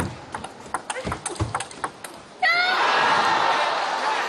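A table tennis rally: a quick run of sharp clicks as the celluloid ball strikes the rubber-faced bats and the table. About two and a half seconds in, the rally ends, and a sudden loud burst of crowd cheering, with a shout falling in pitch, marks the point won.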